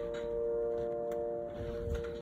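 Upright piano's last chord ringing on after the playing stops, a steady cluster of notes slowly fading away.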